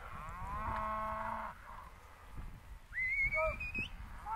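Young cattle bawling: one long moo that rises at its onset and holds until about a second and a half in. Near the end comes a second, much higher call that climbs in pitch.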